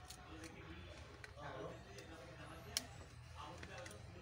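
Faint clicks and taps of a smartphone's plastic back cover and frame being handled while it is refitted, with one sharper click about three-quarters of the way through. Faint voices murmur behind.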